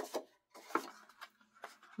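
Paper being handled and slid into a corner-rounder punch: soft rustles and a few light taps.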